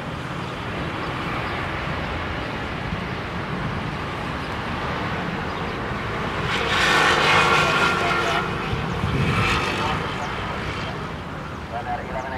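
Jet airliner's turbofan engines passing close on landing approach. The rushing engine noise and whine swell to their loudest about seven seconds in, then fade away.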